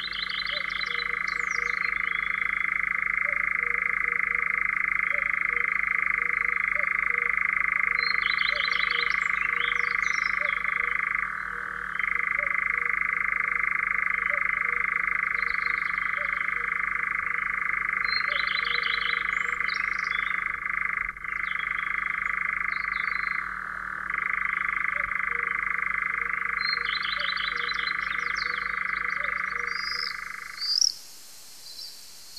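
European nightjar churring: one long, continuous, dry trill held on a steady pitch, broken briefly twice, about 11 and 24 seconds in. Short, higher chattering calls of another bird come every several seconds over it.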